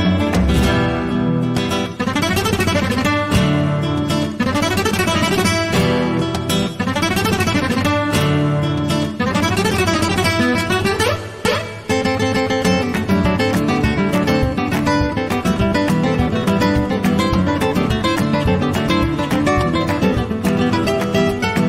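Three acoustic guitars playing together, with fast runs that sweep up and down again and again, giving way about halfway through to fuller, steadier chord playing.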